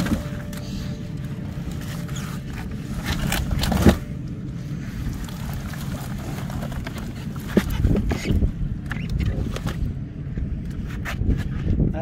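A burlap sack of bait fish (mackerel and jacksmelt) being emptied into a plastic cooler: the sack rustles and scrapes, and fish slide and thud into the bin. The sharpest knock comes about four seconds in and a cluster of knocks follows around eight seconds, over a steady low rumble.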